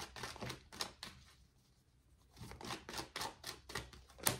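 A tarot deck being shuffled by hand: quick papery clicks and flicks of cards, in two bursts with a short pause between.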